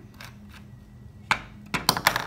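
Plastic test tube and its screw cap being handled and capped: faint clicks, then a few sharp hard knocks in the last second.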